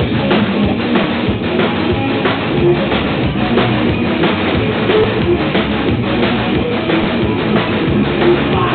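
Rock band playing live and loud: drum kit, electric guitar and bass guitar together in a dense, steady rhythm.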